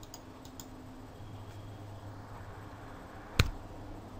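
Faint clicks of computer keys near the start, then one sharp click about three and a half seconds in, over a low steady hum.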